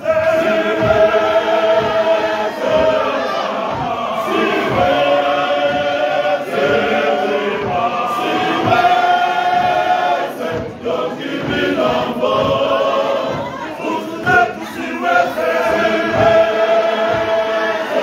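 Church male voice choir singing in long held chords.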